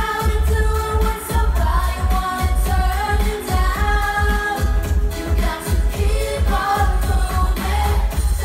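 Live 90s dance-pop song played over a concert PA: women singing a melody over a heavy, pulsing bass beat.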